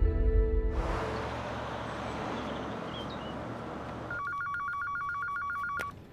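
Low music fades out in the first second into a steady hiss. About four seconds in, an office desk telephone starts ringing with a fast electronic trill, and it cuts off just before the end.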